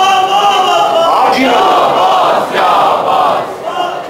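A crowd of men shouting loud, drawn-out calls of acclaim for a recited verse, dipping in loudness near the end.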